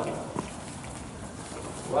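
A horse trotting on the soft sand footing of an indoor arena, its hoofbeats faint and dull, with one brief sound about half a second in.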